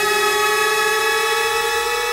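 Moog Model 15 synthesizer holding one sustained, bright tone rich in overtones, its pitch rising slowly and evenly.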